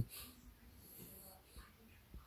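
A small dog lying down, breathing softly, with a couple of faint breaths through the nose.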